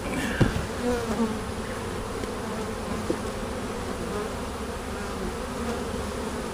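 Honeybees buzzing steadily around an opened hive, many of them in the air as the colony is disturbed.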